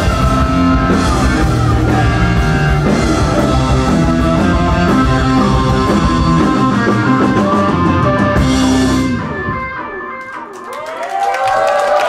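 Psychedelic stoner rock band playing live with loud electric guitars and drum kit; the song ends about nine seconds in and the sound dies away. Near the end the crowd starts cheering.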